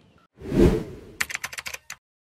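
A whoosh transition sound effect, then a quick run of about eight keyboard-typing clicks in under a second, as in a channel logo ident where a web address is typed out.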